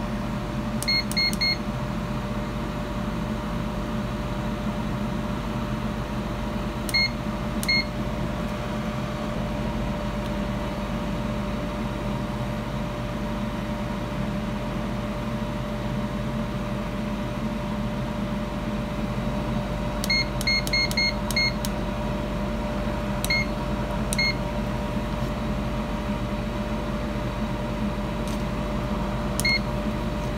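GoWISE USA air fryer running: its fan gives a steady hum with a constant tone. Short high electronic beeps come singly or in quick runs of two to five, several times over.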